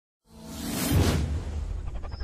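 Whoosh sound effect of a logo intro, swelling to a peak about a second in over a low rumble.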